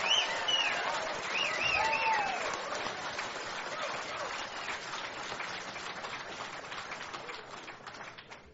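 Audience applauding and laughing, the laughter mostly in the first couple of seconds, the applause dying away toward the end.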